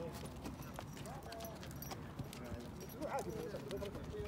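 A horse's hooves striking a sand arena as it moves under a rider, a series of soft irregular footfalls.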